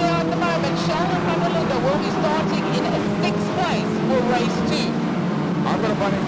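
A pack of Volkswagen Polo Cup race cars running through a corner, their engines droning with notes that rise and fall as the drivers lift and accelerate, under a steady background of voices.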